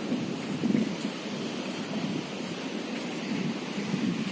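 Wind buffeting a phone's microphone: a steady, uneven low rumble with a fainter hiss above it.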